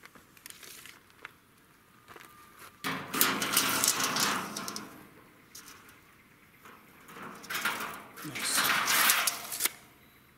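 Steel tape measure run out along a corrugated iron sheet and reeled back in, with the blade sliding and rattling on the metal in two noisy stretches, about three seconds in and again near the end.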